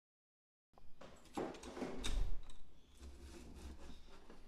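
Wooden paddle pop sticks (craft sticks) clicking and rustling against each other as they are handled and threaded onto a wire. The sound cuts in suddenly under a second in and is busiest over the following second and a half.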